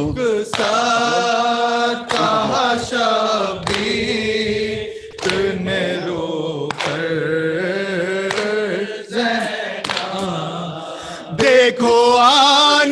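A group of men chanting a noha, a Shia mourning lament, unaccompanied into a microphone, several voices together on one melodic line. Sharp slaps of hands striking chests (matam) mark the beat about every second and a half.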